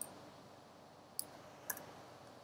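Three faint, sharp clicks of a computer mouse, one right at the start and two more close together over a second in, as lines of code are selected for deletion.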